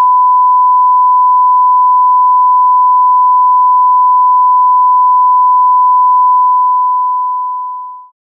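Broadcast 'bars and tone' test tone: one loud, steady sine-wave beep at a single pitch, fading out over the last second or two.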